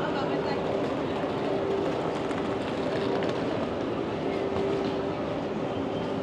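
Busy pedestrian street: background crowd voices over a steady mechanical hum.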